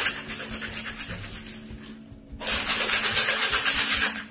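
Ice rattling hard inside a metal cocktail shaker being shaken vigorously, in two loud spells with a quieter stretch in the middle. Faint background music runs underneath.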